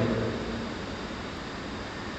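Steady low background hiss and rumble of room noise, with the tail of a man's voice fading away at the very start.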